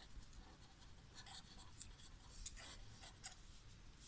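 Faint scratching of a marker pen writing on paper, in short irregular strokes as letters are formed.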